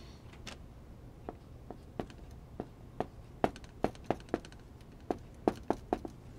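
Dry-erase marker on a whiteboard: a series of short, sharp taps as the tip strikes and lifts off the board while characters are written. The taps start about a second in and come faster and louder in the second half.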